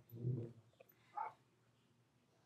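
A household pet's short vocal sound: a low, pitched grumble near the start and a shorter, higher call just after a second in.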